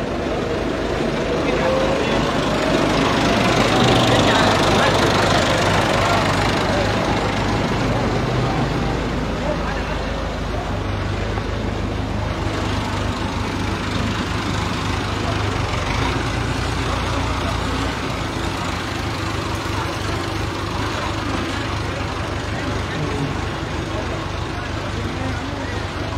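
Engine of a farm tractor hauling a water tank passing close by, its note rising over the first few seconds and loudest about four seconds in, then settling into a steady outdoor rumble.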